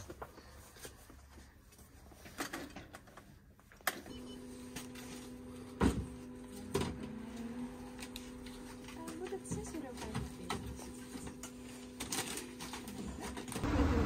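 Shop interior ambience: a steady low hum of several tones sets in about four seconds in, under faint voices and a few sharp knocks.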